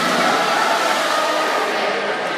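A steady wash of spectators cheering mixed with water splashing from swimmers just after a race start in an indoor pool.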